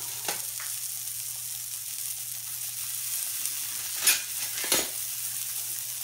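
Breaded pork schnitzel shallow-frying in oil in a pan: a steady sizzle with a few sharp pops and crackles, the loudest about four seconds in.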